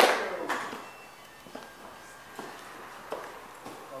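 Audience applause dying away, with a couple of last claps in the first half-second, then a quiet room with a few faint scattered knocks.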